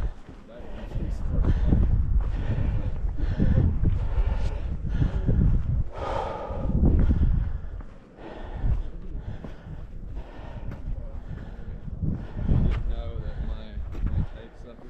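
Wind buffeting the microphone in uneven gusts, with low, indistinct voices under it.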